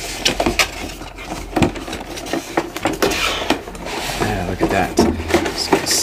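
Cardboard packaging being worked out of a toy box: cardboard scraping and sliding against cardboard, with irregular taps and knocks.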